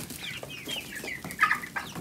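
A flock of chickens clucking and calling in the coop, a busy run of short, high, falling notes, with one louder call about one and a half seconds in.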